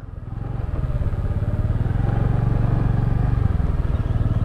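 Honda scooter's small single-cylinder engine running under way through a tight turn, getting louder over the first two seconds and then holding steady.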